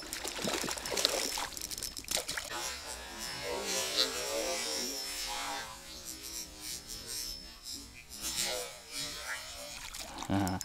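A hooked trout splashing and thrashing at the water's surface as it is played on a spinning rod, in irregular bursts.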